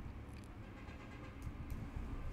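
Quiet room noise with a low hum, and a few faint keyboard clicks in the second half as a short command is typed.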